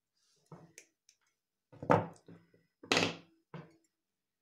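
A few short knocks and clicks from metal jewellery pliers and mother-of-pearl beads handled on the tabletop, a faint one near the start and two louder ones about two and three seconds in.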